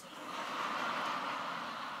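A large audience laughing together, swelling in about half a second in and slowly dying away.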